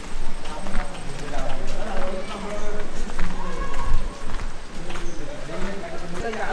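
People's voices talking, with the knock of footsteps walking on a concrete walkway.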